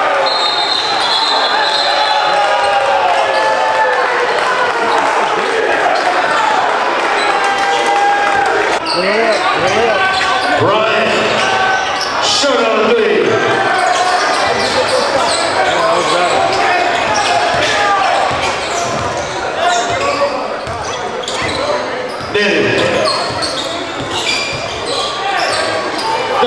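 Live basketball game sound in a large gym: the ball bouncing on the hardwood court, sneakers squeaking, and players and crowd shouting, echoing in the hall.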